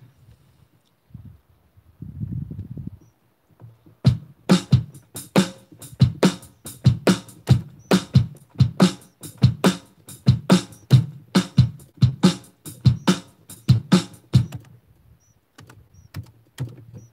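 Electronic hand drum (Korg Wavedrum) struck by hand in a steady beat of sharp hits, about two to three a second, starting about four seconds in after a near-quiet start.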